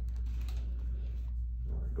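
Steady low room hum with a few faint clicks and rustles of gloved hands settling on a patient's shirt before a mid-back adjustment; no joint crack yet.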